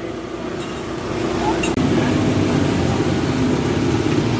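An engine running with a steady hum that grows a little louder about a second in and then holds.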